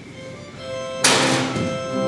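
Organ music starting: soft held notes come in, then about a second in a loud sharp thunk lands as a full chord enters and is held.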